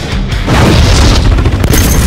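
Explosion booms over trailer music: a deep blast swells about half a second in and a second burst hits near the end.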